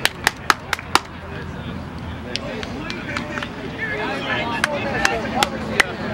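Hand claps close to the microphone: five quick, sharp claps in the first second, then scattered single claps, with voices in the background.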